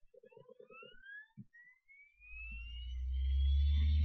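Optical CD/DVD drive spinning up a disc as it starts reading the Windows 10 install DVD. There is a quick run of clicks in the first second and a single knock, then a whine that climbs steadily in pitch, joined about halfway by a low hum that grows louder.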